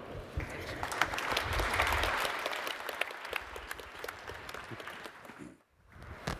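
Audience applauding, swelling a second or two in and then dying away, with the sound cutting out abruptly just before the end.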